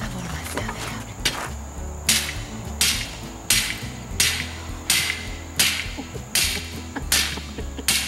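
A hammer striking a rusty metal stake, about ten sharp blows in an even rhythm of roughly one and a half a second, starting about a second in. The stake is being driven into the ground to pin down the bottom of a chain-link fence.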